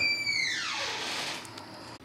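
A whistling tone gliding steadily downward in pitch over about two seconds, with a brief hiss partway through, fading near the end.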